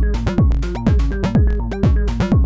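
Live analog synthesizer techno at 124 bpm from Moog semi-modular synths and an Elektron Syntakt. A kick drum with a falling pitch sweep lands on every beat, about two a second, under a stepped sequenced bass line and short hi-hat ticks.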